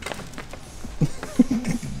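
Plastic underbody panel being pulled down off a car, with small clicks and knocks as loose gravel and clips fall out of it, then a man's low laugh near the end.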